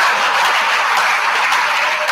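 Audience applauding, a loud, steady clatter of many hands.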